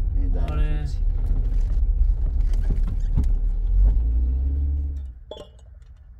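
Steady low road and engine rumble inside a moving car's cabin, with a man's voice briefly near the start. About five seconds in the rumble cuts off suddenly to a much quieter background, broken by one brief sharp click.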